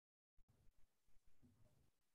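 Near silence: faint room tone through a video-call connection, fully cut out for the first half second and then faintly present.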